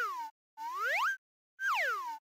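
Cartoon sound effect: three sliding tones of about half a second each, separated by short silences, the first falling in pitch, the second rising and the third falling again.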